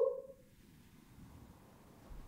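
The tail end of a man's imitation wolf howl, its pitch dropping as it cuts off just after the start, followed by quiet room tone.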